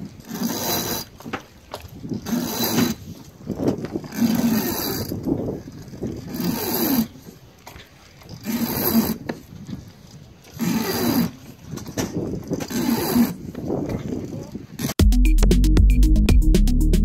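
A sailboat winch being cranked in strokes to hoist a man up the mast in a harness, its ratchet whirring in bursts about every two seconds. Electronic music cuts in abruptly about a second before the end.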